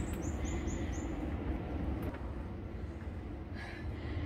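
Outdoor background noise with a steady low rumble from the moving phone microphone during the stair climb. A quick run of about five faint, high, falling chirps comes in the first second.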